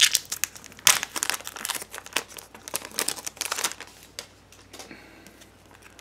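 Foil wrapper of a Bowman Sterling baseball-card pack crinkling and crackling as it is torn open, a dense run of sharp crackles for about the first three and a half seconds. After that only faint rustles as the cards are slid out.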